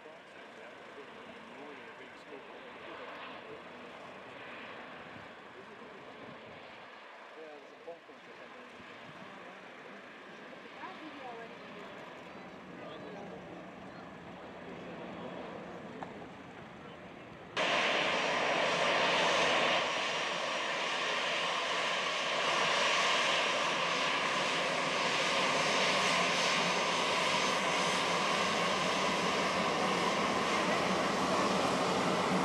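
Airbus A320 jet engines running at low taxi power as the airliner rolls past, a steady whine. It is faint at first, then much louder and fuller from a little past halfway.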